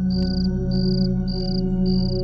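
Crickets chirping in short high pulses, about four in two seconds, over a steady low music drone.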